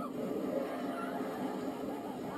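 Roller coaster in motion: a steady rushing ride noise, heard through a television's speaker.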